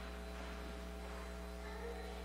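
Steady electrical mains hum in the audio feed: a constant low drone with several fixed overtones, unchanging throughout.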